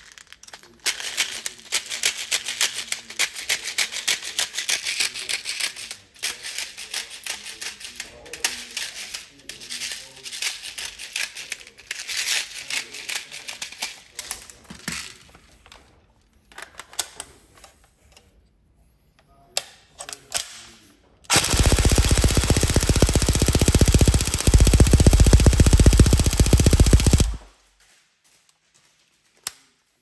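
Tokyo Marui AK Storm NGRS airsoft electric gun, with a Jefftron Leviathan V3 unit, 20:1 gears and a high-speed motor on a 7.4 V LiPo, firing a full-auto burst of about six seconds that cuts off sharply. Before the burst comes a long stretch of rapid, irregular clicking and rattling, then a few single clicks.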